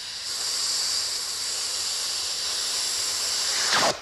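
Compressed air hissing steadily from a hand-held nozzle on a hose, a stream of air blown across curved magazine pages; the hiss cuts off sharply near the end.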